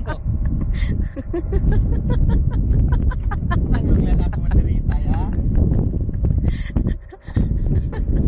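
Wind rumbling on the microphone, with a person's voice talking over it; the rumble drops out briefly about seven seconds in.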